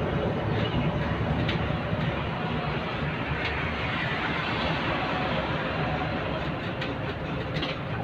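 Cabin noise of a city bus on the move: a steady low rumble of engine and road, with a few light rattles from the bodywork.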